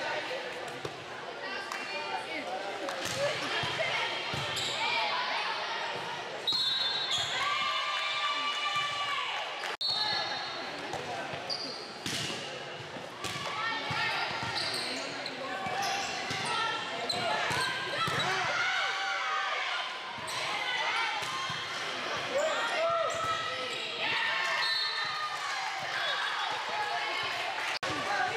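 Volleyball rally in a large echoing gym: players and spectators calling out and shouting over one another, with the thuds of the ball being struck and hitting the court.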